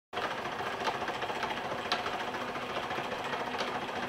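Homemade Bidini-type magnet motor running, its disc rotor turned by pulsed driver coils: a steady mechanical whir with a few faint ticks.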